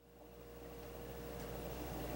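Faint room tone: a steady low hum under a soft hiss, with a thin high hum that stops about one and a half seconds in. It grows gradually louder.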